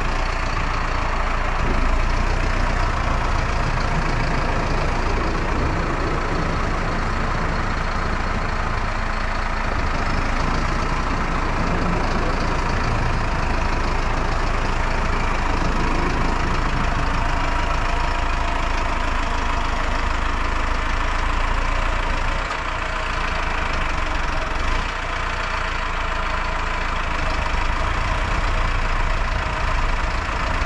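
Valtra N123 tractor's diesel engine running steadily at low speed as the tractor crawls through deep, hard-packed snow.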